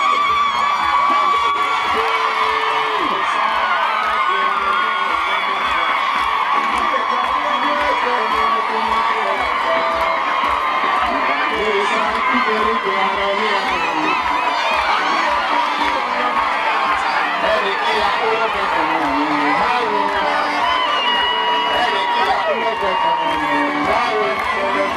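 A dancing crowd cheering and shouting over loud dance music with a steady, even beat.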